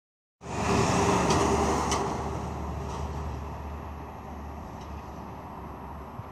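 Road traffic: a vehicle passing close by on the street, loudest in the first two seconds, then fading to a steady traffic rumble.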